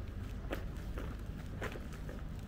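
Footsteps on a paved footpath, about two steps a second, over a steady low background rumble.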